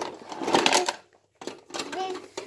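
Plastic toy tools clattering against each other and against the plastic toolbox as a child drops and rummages them in, in two spells of rattling with a short pause just after a second in.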